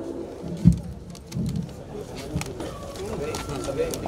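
Faint voices and handling noise from a lull on a stage, with one sharp thump about a second in.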